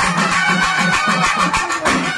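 Kerala festival band playing: chenda drums beat a fast even rhythm of about four strokes a second under horns and cymbals, the drums louder than the horn melody here.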